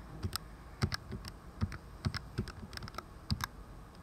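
Keys being tapped in a quick, irregular run of light clicks, a calculation being keyed in.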